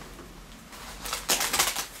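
Packing wrap crinkling and rustling as it is pulled off a guitar body. The crinkling starts about a second in and lasts about a second.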